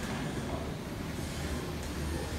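Steady background noise: a low hum under a faint even hiss, with no distinct events.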